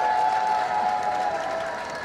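Audience noise in a hall: a crowd cheering and calling out, with sustained held voices that fade about halfway through.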